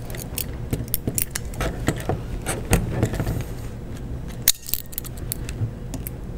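Irregular small clicks and light plastic-and-metal rattles of a small nylon zip tie being pulled tight around the toothed belt loop on a 3D printer's X carriage, with pliers.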